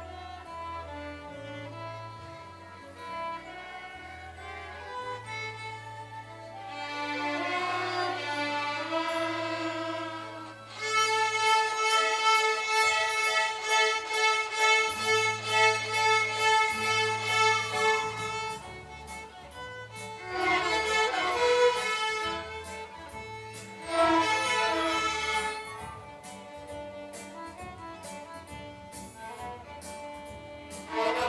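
Student violin ensemble playing a pop tune, a featured violinist leading and the group playing backup, over steady low bass notes. The music swells louder about eleven seconds in.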